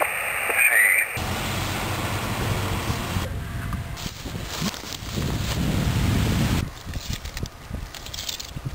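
For about a second, shortwave receiver audio with gliding SSB tuning whistles, then a cut to wind buffeting the camera microphone, a loud rumbling noise. Near the end the wind drops and a few light knocks are heard.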